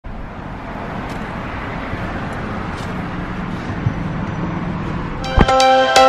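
Steady motor-vehicle noise with a faint low hum, outdoors beside a car. About five seconds in, a thump, then music of short distinct notes begins.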